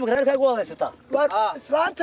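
Several men's voices, loud and animated, in Somali.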